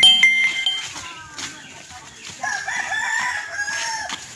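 A rooster crowing once, a long wavering call of about a second and a half in the second half. The first second holds a bright ringing tone as background music ends.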